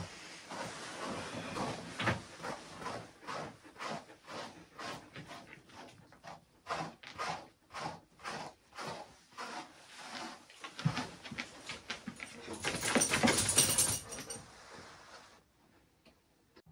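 A hand brush drawn again and again through a dog's thick, dense coat: scratchy strokes at a steady two to three a second, with a louder stretch of rustling brushing near the end before it stops.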